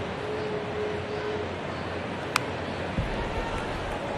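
Ballpark crowd murmur, broken about two and a half seconds in by a single sharp crack of a bat fouling off a fastball. A low thump follows near the end.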